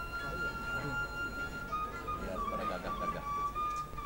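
Sundanese bamboo flute (suling) playing long held notes, stepping down to a slightly lower note about halfway, with a plucked kacapi zither accompanying in kacapi suling style.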